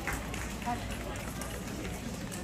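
Indistinct background chatter in a large show hall, with the footsteps of handlers trotting dogs around the ring.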